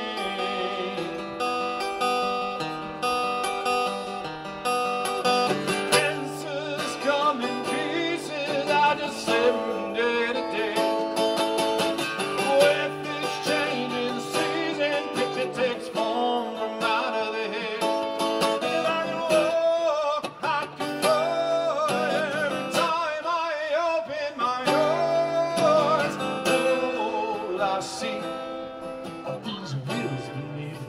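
Acoustic guitar strummed and picked through an instrumental passage of a folk song, played live into a microphone.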